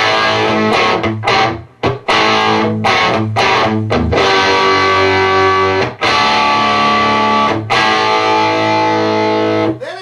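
Electric guitar played through a hand-built Marshall Plexi-style valve amp turned up with its master volume at about six, giving a distorted tone. Short, choppy chord stabs in the first few seconds, then longer ringing chords, stopping just before the end.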